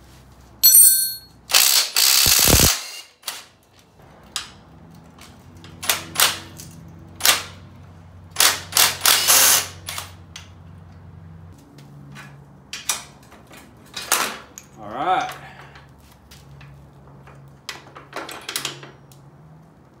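Cordless impact wrench hammering in two short bursts of about a second each, breaking loose the lower A-arm bolt on a Yamaha YFZ450's front suspension, with sharp metal clicks of tools and parts in between.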